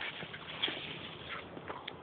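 Dogs tussling over a rope toy: faint, scattered scuffs and rustles of paws on dry grass and leaves.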